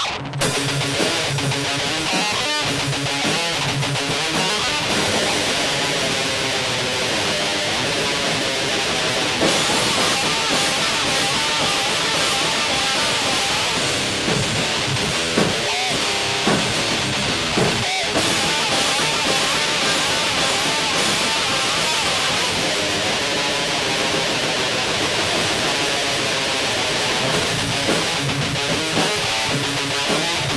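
Rock band playing loudly: electric guitar strummed over drums and cymbals.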